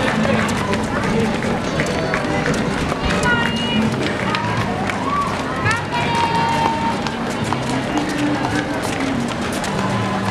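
Busy roadside crowd at a marathon: runners' footsteps on the road and spectators' voices, with scattered short whistles or calls and music playing underneath.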